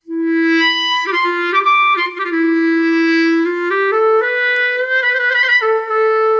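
SWAM Clarinet software instrument playing a smooth, connected phrase of several held notes, climbing in pitch in its second half. Its volume comes from breath blown into an Akai electronic breath controller: with no breath there is no sound.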